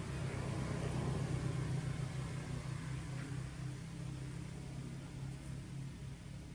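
A motor engine running steadily at idle, a low hum that eases slightly toward the end.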